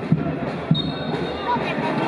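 A supporters' drum beating about twice a second over crowd voices and chatter in the stands. A high, steady whistle tone sounds for about a second in the middle.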